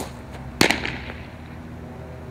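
A fastpitch softball riseball smacking into the catcher's leather mitt: one sharp crack about half a second in, ringing off briefly.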